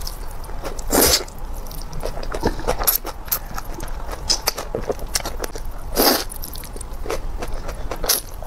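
A person slurping and chewing noodles close to the microphone, with two loud slurps, one about a second in and one about six seconds in, and soft wet chewing clicks between them.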